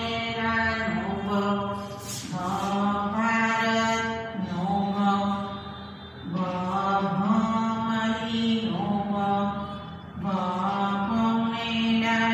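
A voice singing a slow devotional chant in long held, gliding notes, in phrases of about four seconds with a short break for breath between them.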